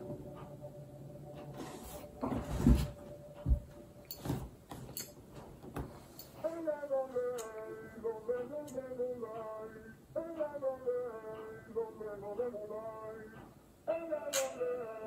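Music video soundtrack: a few scattered knocks and clicks, then about six seconds in a woman's voice begins singing long, gliding notes with little accompaniment.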